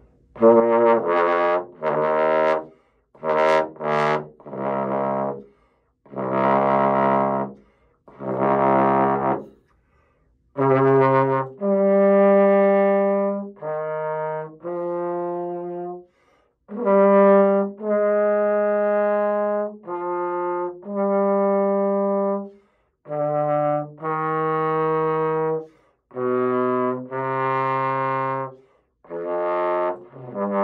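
Bach Stradivarius 42BG tenor trombone, gold brass bell, being played. A string of short, separate notes in the first ten seconds, some of them very bright, then slower phrases of held notes about a second or two long with brief breaths between.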